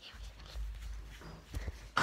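Low rumble of a hand-held camera being moved about, with a few soft knocks about one and a half seconds in.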